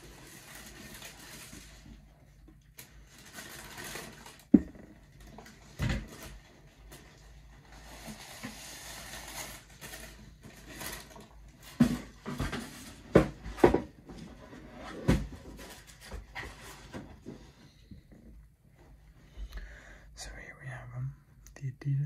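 Tissue paper rustling and crinkling as a pair of golf shoes is unwrapped and lifted out of its box, with sharp knocks and thumps as the shoes are handled and set down, the loudest about four and a half seconds in and several more between twelve and fifteen seconds.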